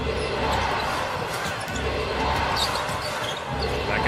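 A basketball dribbled on a hardwood court, with steady crowd noise in the background.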